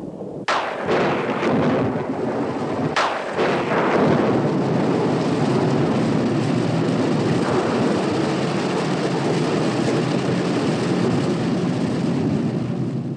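Two sharp thunderclaps, one about half a second in and another about three seconds in, each trailing off into a rumble, followed by steady heavy rain.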